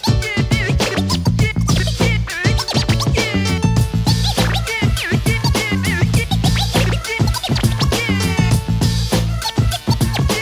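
Hip hop DJ mix: a bass-heavy beat with turntable scratching, quick up-and-down pitch sweeps cutting over the drums.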